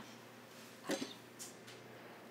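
Quiet room tone, broken about a second in by one short spoken word.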